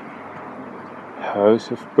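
Faint outdoor background noise, then a man starts talking a little past halfway through.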